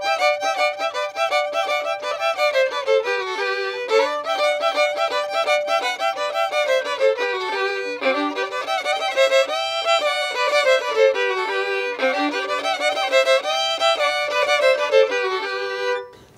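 Mariachi violins playing a melody in two-part harmony, the phrase repeating about every four seconds.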